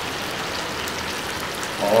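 Chicken pieces in oil and juices cooking over the flame in a kadhai, giving a steady sizzling hiss.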